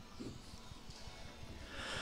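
Faint breathing into a studio microphone, with low rustles and a soft intake of breath swelling in the last half second before the host speaks.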